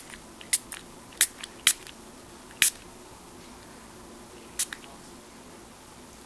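Small plastic spray bottle spritzing alcohol onto a fingernail: five short, sharp spritzes spaced unevenly, four in the first three seconds and the last about four and a half seconds in.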